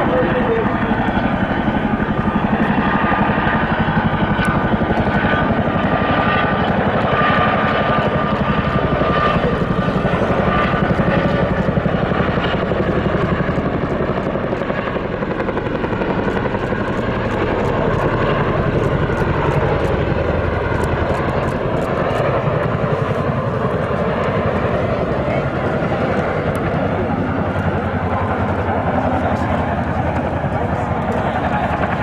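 A CH-47J Chinook helicopter flying overhead: its tandem rotors beat steadily over the sound of its turbine engines while it carries and releases a slung water bucket.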